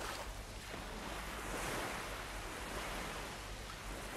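Sea waves washing on the shore: a steady rush of surf that swells slightly in the middle.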